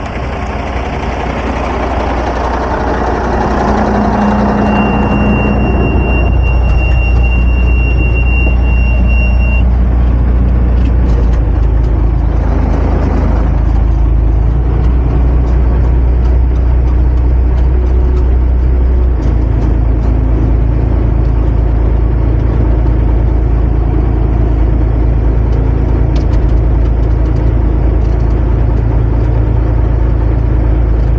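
The diesel engine of an M939A2 military 6x6 truck runs steadily; the drone grows louder over the first several seconds and is then heard from inside the cab. A thin high whistle holds for a few seconds early on, and the low drone changes pitch about two-thirds of the way through.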